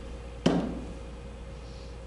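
A single sharp tap about half a second in, over a steady low hum.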